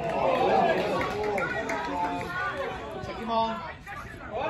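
Several voices talking and calling out over one another at a football pitch, loudest in the first second.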